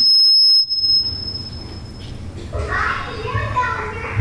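A high-pitched single-tone squeal of microphone feedback through a PA system. It is very loud for about half a second at the start, then fades out at about two seconds.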